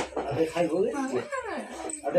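Voices in a crowded room, with a high, whining voice that rises and falls.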